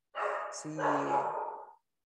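A man's voice saying a single drawn-out word, a hissy 'C' followed by a long held vowel: speech only.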